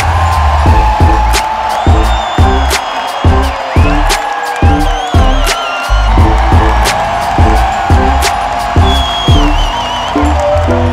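Loud music with a heavy, steady beat and bass.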